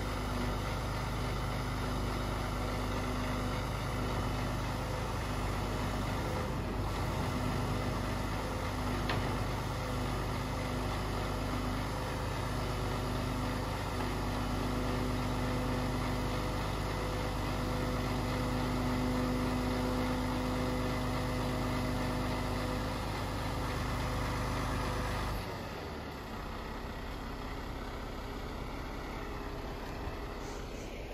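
Heavy delivery lorry's diesel engine running steadily while its truck-mounted hydraulic crane unloads pallets, with a low rumble and a steady hum. About 25 seconds in it drops to a quieter, lower running sound.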